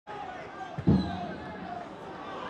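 Football match sound: a football kicked once, a loud thud about a second in, over a background of players' and crowd voices.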